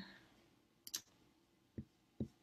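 A single sharp computer mouse click about a second in, then a soft low thump near the end, over near silence.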